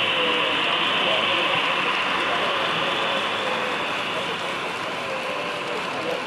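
Model freight cars rolling past close by on metal track: a steady rolling rush of wheels that slowly fades as the train goes by, with faint crowd chatter behind.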